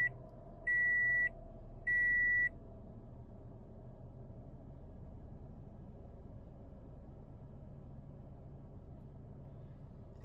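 Toyota Corolla's in-cabin warning chime giving steady high beeps a little over a second apart, stopping about two and a half seconds in. After that the freshly restarted engine idles faintly and steadily.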